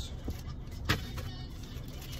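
Paper food wrappers being handled and unwrapped, with one sharp crinkle about a second in, over the low steady hum of a car's interior.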